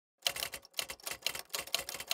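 Typewriter keystroke sound effect: rapid clicking keystrokes in uneven clusters, starting about a quarter second in, timed to on-screen text typing out.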